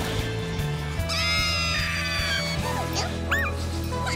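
Cartoon soundtrack: background music under a high, squeaky cartoon-creature cry that starts about a second in and lasts over a second, followed by a short rise-and-fall chirp near the end.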